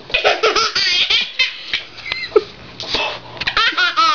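Ten-month-old baby laughing in repeated high-pitched bursts, ending in a long run of quick laugh pulses near the end.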